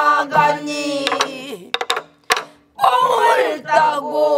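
A group of voices singing together in Korean pansori style, the teacher's voice leading, with the sharp stick strokes of buk barrel drums marking the beat every second or so. The singing breaks off briefly twice in the middle.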